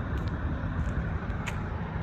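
Steady background rumble of vehicles, with a few faint clicks about a second and a half in.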